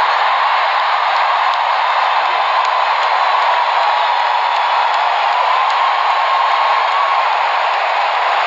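Large stadium crowd cheering and applauding, a loud, steady wall of voices and clapping.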